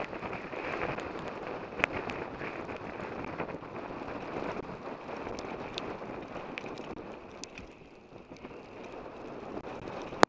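Mountain bike rolling downhill on a wet gravel trail: a steady rush of wind on the microphone and tyre noise, with scattered clicks and rattles and one sharp knock about two seconds in.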